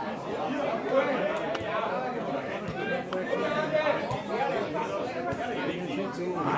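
Indistinct chatter of several spectators talking at once, voices overlapping with no clear words.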